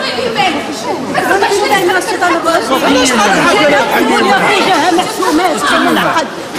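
Several people talking over one another at once, a loud tangle of overlapping voices in a large indoor hall.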